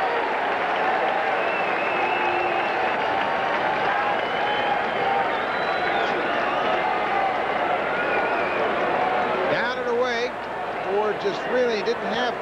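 Ballpark crowd noise, a steady din of many voices with clapping, as the bases are loaded late in a tied game. A man's voice starts talking near the end.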